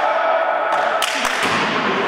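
A volleyball struck once about a second in, a sharp thud that echoes in a sports hall, over continuous noise from the hall.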